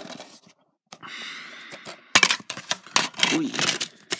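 Plastic DVD case being handled: a soft sliding rustle about a second in, then a run of sharp clicks and clatter as the disc comes loose from its holder and drops out.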